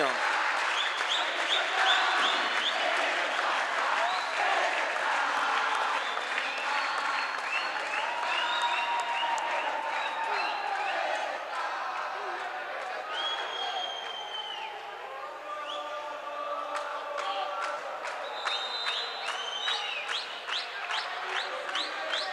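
Basketball home crowd in the stands: many voices talking and shouting over one another, with applause. Near the end, sharp claps or beats come in a fairly regular run.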